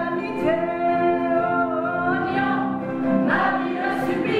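Stage musical cast of men and women singing together in chorus, long held notes over instrumental accompaniment.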